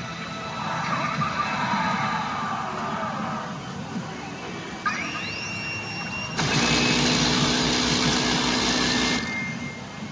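Pachinko machine sound effects during a reach animation over a steady din: a rising sweep about five seconds in, then a loud burst of effect noise about three seconds long that cuts off suddenly.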